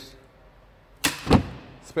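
A car's carpeted boot floor panel dropping shut over the spare wheel well: a sharp knock followed closely by a low thud, about a second in.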